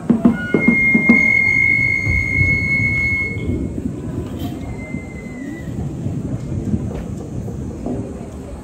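Japanese festival music ending: a few drum beats in the first second, and a Japanese transverse flute holding one long high note that stops about three and a half seconds in, followed by a low background murmur.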